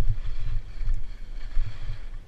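Skis hissing and scraping over windblown snow during a fast descent, with wind buffeting the camera's microphone in uneven low gusts.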